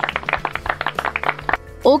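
A group of children clapping, quick irregular claps lasting about a second and a half, over soft background music.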